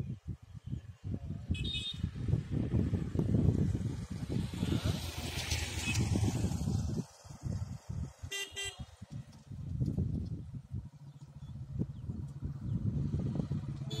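Road traffic with a low engine rumble and two short vehicle horn toots, one about a second and a half in and another about eight seconds in. A motorcycle engine grows louder near the end.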